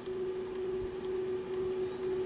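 A steady electrical hum in the recording: one held mid-low tone with a fainter lower tone beneath it, over faint background hiss.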